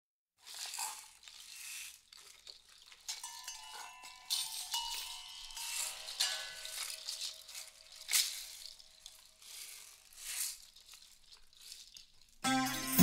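Quiet, sparse percussion opening a song: irregular shakes of a rattle, with soft ringing chime-like tones coming in about three seconds in.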